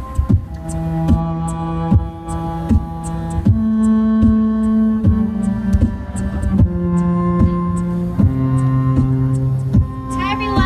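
Live violin-and-keyboard duo music: slow, held notes over a low line that steps down about every one and a half seconds, with a steady hum underneath.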